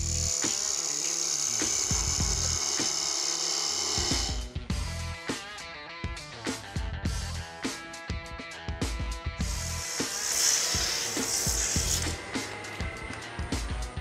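Wood lathe spinning a wooden table-leg blank while a hand-held turning tool cuts into it, giving a steady hiss of peeling shavings for the first four seconds and again for a couple of seconds near the end. Background music with a beat runs underneath and fills the gap between the cuts.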